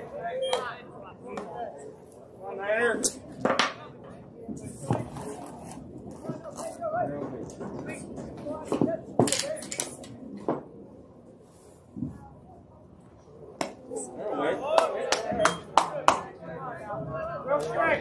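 Indistinct chatter and calls of spectators and players at a baseball field, louder in the last few seconds, with several sharp clicks scattered through.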